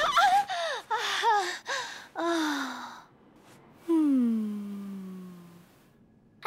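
A woman's voice gasping and moaning in short breathy cries that bend up and down, then about four seconds in one long sigh that slides down in pitch and fades. These are pleasured moans building to a climax.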